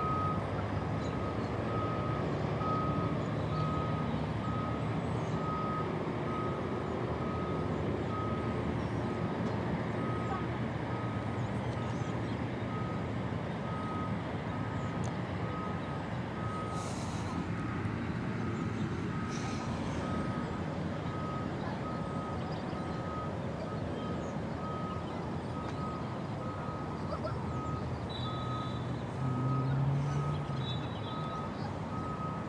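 A vehicle's reversing alarm beeping at an even rate, one steady pitch, over the low rumble of its engine.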